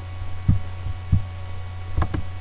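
A steady low electrical hum on the recording, with two dull low thumps, one about half a second in and one just after a second, and a fainter one between them.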